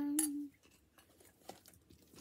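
A girl's singing voice holding a note that stops about a quarter of the way in, followed by faint small clicks and rustles of sweet wrappers being handled.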